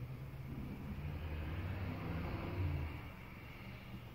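A low rumble that swells to a peak a little over two and a half seconds in, then fades.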